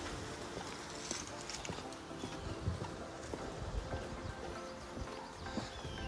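Footsteps on a concrete driveway at a walking pace, irregular soft thuds a few times a second.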